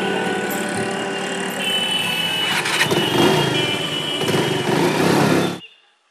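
Motor vehicle engine running, as music fades out at the start; it grows louder about three seconds in and cuts off suddenly near the end.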